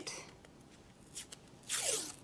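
Masking tape pulled off its roll in one short rasp near the end, after a couple of faint ticks.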